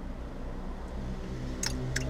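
Steady low hum of a car's idling engine heard from inside the cabin.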